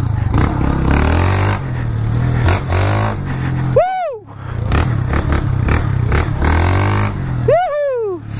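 A 160 cc single-cylinder motorcycle engine working hard under load, its revs rising and falling as the tyres sink and slide in deep loose sand. The throttle drops briefly about four seconds in. Two short whooping shouts come, one mid-way and one near the end.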